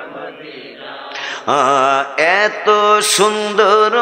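A man chanting a naat in long, drawn-out 'ah' notes whose pitch slides and wavers. It begins about a second and a half in, after a brief quieter lull.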